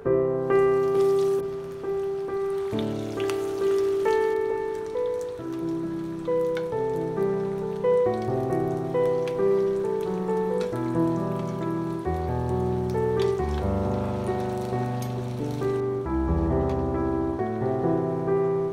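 Piano background music with a melody and bass line, over the crackling sizzle of breadcrumb-coated potato cutlets shallow-frying in hot oil. The sizzle drops away near the end.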